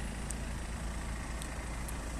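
BMW 320d's 2.0-litre four-cylinder turbodiesel idling steadily, a low, even running sound.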